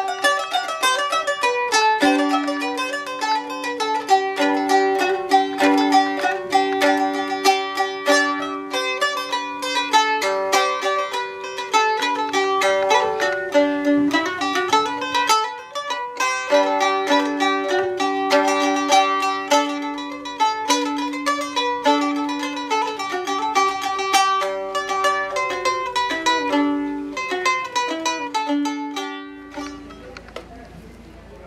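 A medieval gittern (guiterna) playing a medieval dance tune in quick plucked notes over steady low notes. The playing stops just before the end.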